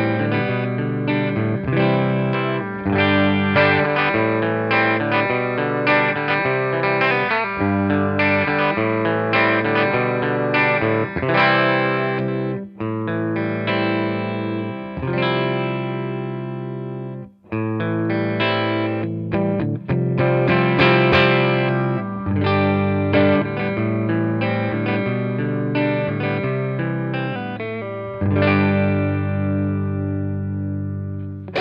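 Eastcoast GS10 double-cutaway electric guitar with humbucker pickups, played through a mildly overdriven amp: riffs and ringing chords, first on the neck pickup and later on both pickups together, with a brief break about halfway through.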